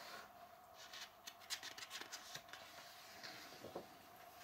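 Faint rustling and crackling of a book's paper page as hands slide over it and turn it, a scatter of small crisp crackles.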